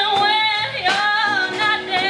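Woman singing into a microphone with a live band of electric guitar, bass guitar and drums, the sung line sliding and wavering over held chords, with a couple of drum hits.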